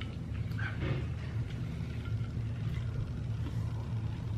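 A steady low hum, with faint, scattered small sounds over it.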